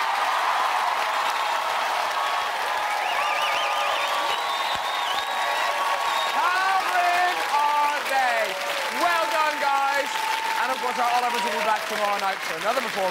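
A studio audience applauding and cheering, with yells and high screams rising above the clapping.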